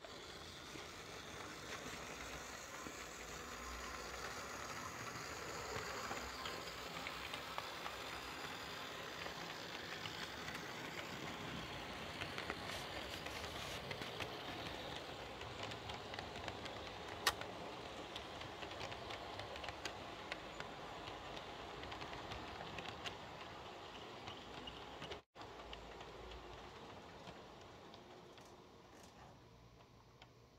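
Märklin H0 model train running on metal track: the E 424 electric locomotive, which has no sound module, hauling passenger coaches, giving a steady rolling hiss and motor hum with light, fast clicking of wheels over the rail joints. One sharper click comes about two-thirds of the way through, and the sound drops out briefly near the end.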